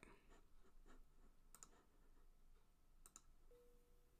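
Near silence broken by three faint clicks about a second and a half apart, typical of a computer mouse. A faint held tone starts near the end.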